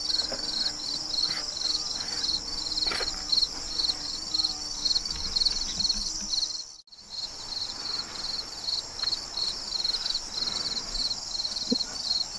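A chorus of crickets and other insects: a high chirp pulsing about three times a second over a continuous higher trill. The sound cuts out for a moment about seven seconds in, then carries on as before.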